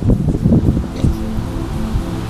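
Background music with steady low bass notes, under an irregular low rumble of wind and handling noise on the microphone.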